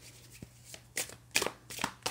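A deck of tarot/oracle cards being shuffled by hand: a few short swishes of cards, the loudest about a second and a half in.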